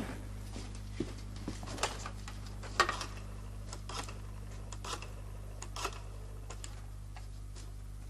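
Desk telephone being dialed and handled: scattered light clicks and knocks, the sharpest a little under three seconds in, over a steady low hum.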